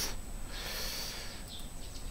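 A person's short breath close to the microphone, lasting about a second.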